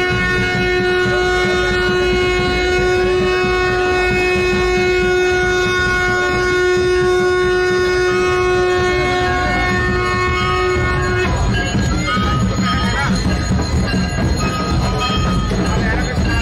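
A single steady horn-like note, held unchanged for about eleven seconds and then cut off, over the low rumble of a crowd. Scattered shorter tones and crowd noise follow.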